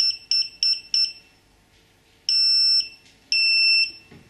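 High-pitched electronic beeps from an AntiLaser Priority laser jammer system as codes are keyed into its menu on the control set. Four quick short beeps come in the first second, then after a pause two longer beeps of about half a second each.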